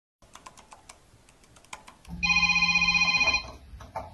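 Keys clicking on a tablet's keyboard case in a quick irregular string for about two seconds. Then an electronic phone ringtone sounds loud and steady for just over a second before stopping.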